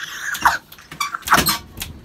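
Excited high-pitched squeals from a person, each sliding down in pitch: one about half a second in and a louder cluster past the middle.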